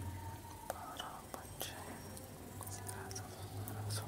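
Faint steady low hum with a scattered handful of light clicks and ticks.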